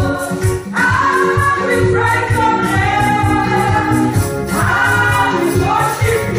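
Women's gospel choir singing a praise-and-worship song into microphones, amplified through a PA, over a steady low beat. New sung phrases swell in about a second in and again near the end.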